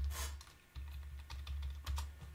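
Irregular keystrokes typed on a computer keyboard, a few separate key clicks, over a steady low hum. There is a short hiss just after the start.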